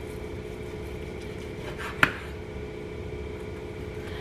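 Chef's knife slicing through a cooked ham on a plastic cutting board, with one sharp knock of the blade on the board about halfway through, over a steady background hum.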